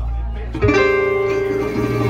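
Small live jazz combo of accordion, upright bass, guitar and a melody player. Low bass notes run under the band, and a long held melody note comes in just over half a second in and carries on to the end.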